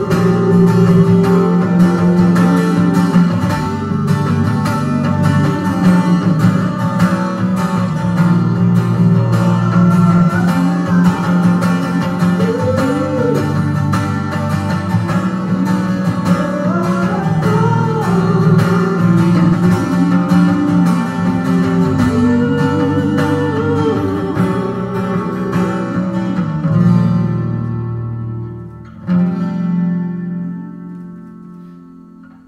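A man singing with a strummed twelve-string acoustic guitar in a live performance. Near the end the playing drops away and one last strummed chord rings on.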